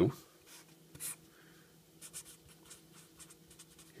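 Felt-tip marker drawing on paper: short scratchy strokes as lines are ruled and letters written, the loudest stroke about a second in.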